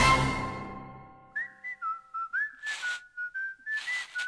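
The cartoon's closing music ends on a held chord that fades away over about a second. Then comes a short whistled tune, one sliding melody line, broken by two brief hissing noises.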